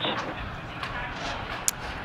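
Steady hiss of background noise, with one short click near the end.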